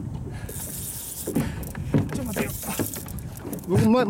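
Wind and water noise around a small boat at sea, with a few faint voices. A man starts speaking loudly just before the end.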